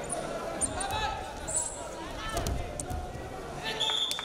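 Wrestling shoes squeaking on the mat with thuds of bodies as one wrestler lifts the other and takes him down. Men shout in the background of a large, echoing hall, and a short high whistle sounds near the end.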